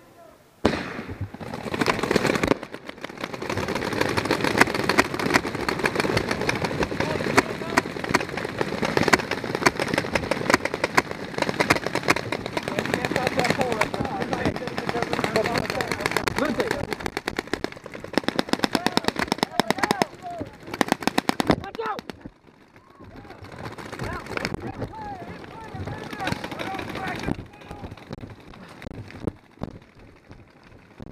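Many paintball markers firing at once in dense, rapid volleys at the break-out of a paintball game, thinning out after about twenty seconds.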